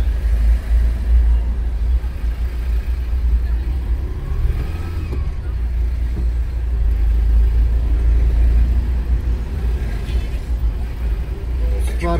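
Steady low rumble of a car's engine and road noise heard from inside the cabin as the car creeps along in slow, heavy traffic.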